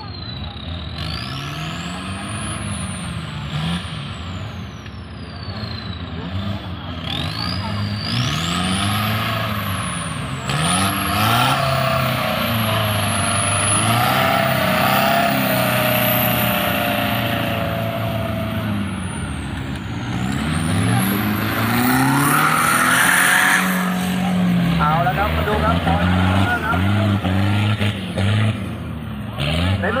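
Off-road 4x4 truck engines revving hard again and again, their pitch rising and falling, with voices in the background.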